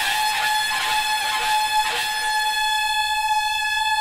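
Conch shell (shankh) blown in one long, steady, horn-like note.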